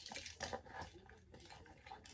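Faint handling noise of small items in a purse: soft rustling with a few light clicks and taps.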